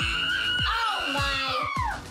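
A girl's long, high-pitched squeal of celebration that falls away near the end, after hitting the target, over background pop music with a steady beat.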